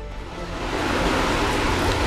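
A rushing gust of storm wind that builds over the first second and then holds, over background music.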